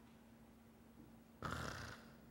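Quiet room with a faint steady hum; about one and a half seconds in, a man lets out a short breathy sighing 'ah'.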